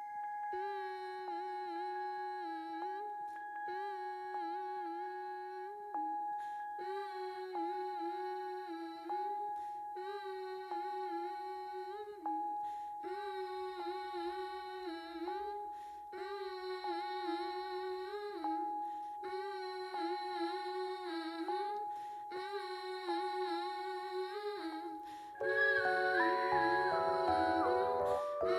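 Slow wordless humming in a voice, repeated in phrases of about two seconds with short breaks, over a single high tone held steady throughout. Just before the end, a louder and fuller layer of music comes in.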